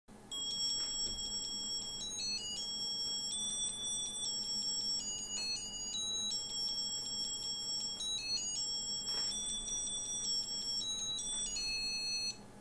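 Electronic sound chip in a novelty light-up Christmas sweater playing a tune, set off by pressing the Santa's nose button: a high-pitched beeping melody of thin pure notes stepping from one pitch to the next.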